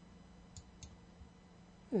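Two faint computer mouse clicks about a third of a second apart, over a low steady hum.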